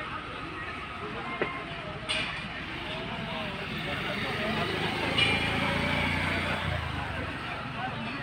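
Outdoor murmur of indistinct voices, with a motor vehicle's low engine rumble building about halfway through and dropping away shortly before the end.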